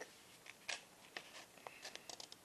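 Faint paper crackling as a folded sheet of paper is handled and creased by hand, a few brief crinkles spread through the moment.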